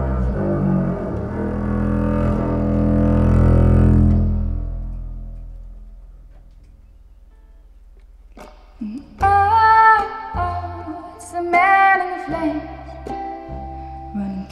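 Bowed double bass playing long low notes that swell and then fade away. After a short near-pause, the music comes back about two-thirds of the way in with higher held notes over the bass.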